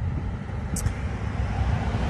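Steady low rumble of road traffic on a city street.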